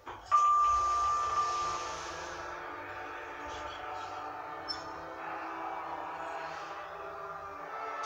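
Passenger lift at a floor stop: a single held beep lasting about a second and a half, over a rushing sound that fades by about two and a half seconds in, then a steady hum with several faint droning tones.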